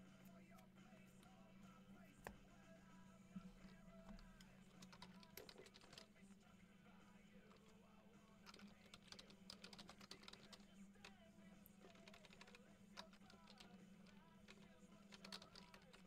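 Near silence: faint computer-keyboard typing and scattered clicks over a low steady hum.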